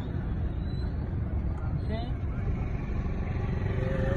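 Steady low rumble of a slow-moving car, heard from inside the cabin, with a short rising call or voice about two seconds in.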